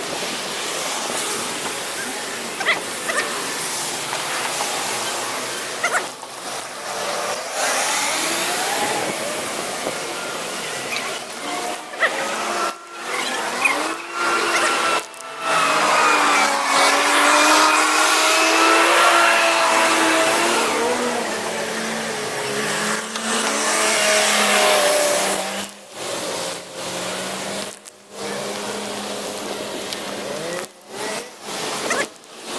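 Passing motor traffic: a steady rush of noise with a vehicle's engine note slowly rising and falling through the middle, loudest around the middle.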